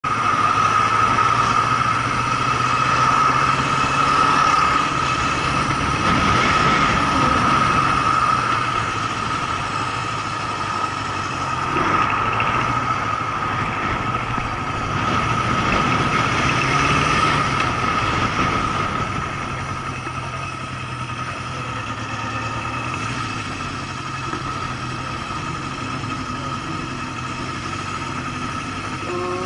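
Honda CB750's air-cooled inline-four engine running as the motorcycle rides along and then slows into a parking lot, its pitch rising and falling with the throttle. It settles to a quieter idle for the last several seconds. A steady high whine runs underneath throughout.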